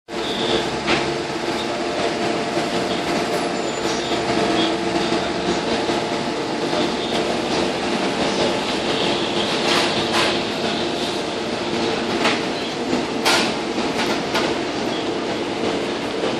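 Street traffic at a bus and minivan stop: the steady hum of idling and passing bus and van engines, with a few sharp clicks and knocks.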